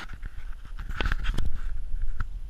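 Dog panting as it moves off, with sharp clicks of its claws on a hardwood floor and a low rumble of the camera jostling on it, louder from about halfway through.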